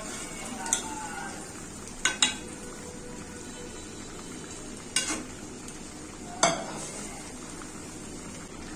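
Fish curry sizzling steadily in an aluminium pan while a metal spatula stirs it, knocking sharply against the pan about five times.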